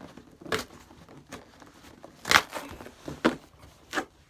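Cardboard mailing box being pulled and torn open by hand: about four short tearing sounds, the loudest a little past halfway.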